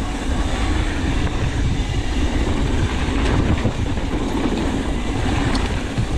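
Sonder Evol 29er mountain bike rolling fast down a hardpacked dirt trail: a steady, loud rumble of tyres on dirt and rattle from the bike, with wind buffeting the microphone and a few small knocks.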